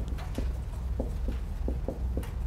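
Whiteboard marker knocking against the board as words are written: a run of short, light, uneven taps, a few a second, over a steady low room hum.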